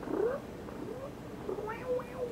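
A house cat meowing: a short rising meow just after the start, a fainter one about a second in, and more short calls near the end.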